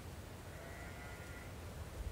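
A single faint sheep bleat, about a second long.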